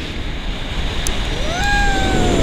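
Wind rushing over the microphone of a camera on a tandem paraglider in flight. About a second and a half in, a person's voice starts a long call that rises in pitch and then holds.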